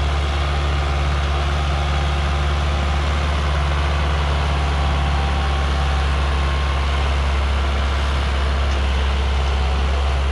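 Preet 6049 tractor's diesel engine running steadily under load as it pulls a harrow through tilled soil: a loud, low, even drone.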